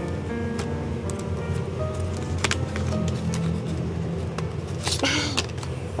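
Soft background music with sustained tones, over scattered clicks and rustles of hands opening a paper box and handling a liquid-filled plastic notebook. A longer rustle comes about five seconds in.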